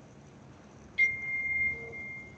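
A single high-pitched chime strikes about a second in, then rings as one steady tone and fades out over nearly two seconds.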